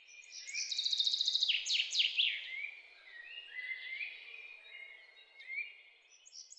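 Several birds singing together, with rapid trills and quick downward-sliding notes, loudest about one to two seconds in, over a faint steady hiss.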